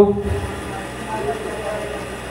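The hall's steady background hum from fan or air-conditioning noise during a pause in amplified speech; the man's voice trails off just after the start, and a faint voice is heard in the background.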